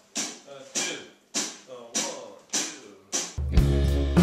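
Drum kit struck in a steady beat, a sharp hit a little under twice a second, each ringing briefly. A little over three seconds in, a full band with heavy bass comes in loudly.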